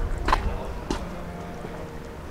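Two footsteps on brick paving, about half a second apart, over a low steady rumble.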